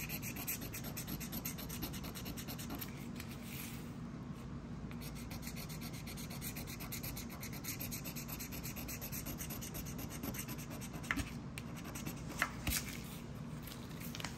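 A Texas Lottery Lotería scratch-off ticket being scratched, its coating rubbed off in a fast, steady run of short scraping strokes. A few sharper clicks come in the last few seconds.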